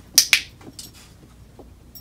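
A dog-training clicker clicked once, its press and release giving two sharp clicks in quick succession. The click marks the puppy's nose touch to the hand, to be followed by a food reward.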